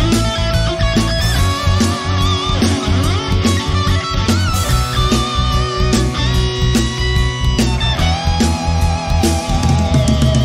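Rock urbano song playing an instrumental passage: an electric guitar lead with wavering, bending notes over a drum kit and a steady low end.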